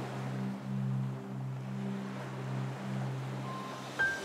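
Slow, soft background music of long held low notes that change every second or so, over the steady wash of ocean waves.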